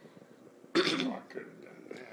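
A single short cough from a person about three quarters of a second in, over faint room sound.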